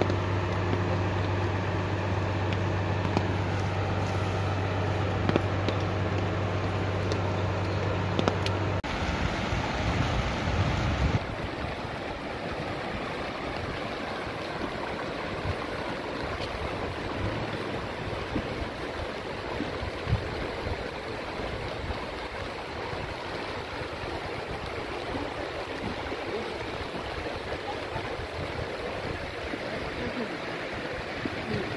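Floodwater running across a street as a steady rushing noise. For about the first nine seconds a steady low hum lies under it and then stops abruptly.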